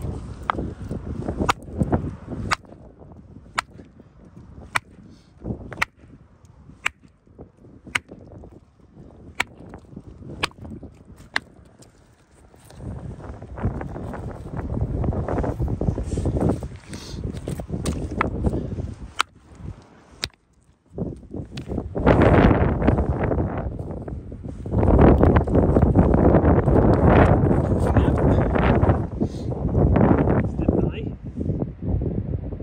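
A geological hammer striking a rock nodule over and over to split it open, sharp cracks coming about once a second and less often after the middle. From about halfway, wind buffeting the microphone comes in as a loud low rumble and covers the strikes near the end.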